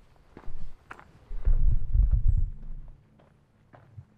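Footsteps on a dirt forest path, a few separate steps, with a loud low rumble on the microphone lasting about a second in the middle.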